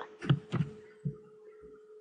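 A few soft clicks and thumps from a computer keyboard and mouse, mostly in the first second, over a faint steady electrical hum.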